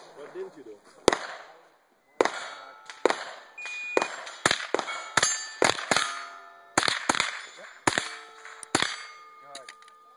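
Ruger SR9 9mm pistol fired in a rapid string of about a dozen shots at steel targets, the plates ringing briefly as they are hit. The shots come in uneven quick pairs and singles, ending about nine seconds in.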